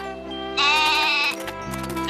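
A goat bleating twice: a wavering call about half a second in, and another starting near the end. Background music plays under it.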